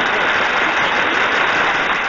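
Crowd applause sound effect, loud and even, rewarding a correct answer in a quiz game.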